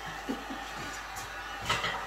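Handheld electric heat gun running steadily, a fan hiss with a faint motor whine, blowing hot air over a freshly painted head to dry it. A brief louder breathy sound comes near the end.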